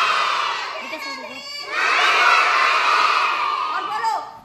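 A class of young children shouting together in unison: two long, loud shouts, the second starting a little under two seconds in.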